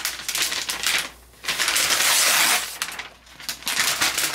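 Thin protective wrap being peeled off a new MacBook Pro and crumpled, a loud crinkling in three spells with two short pauses.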